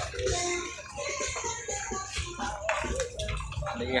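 Busy open-air market ambience: a hubbub of overlapping voices with scattered clattering.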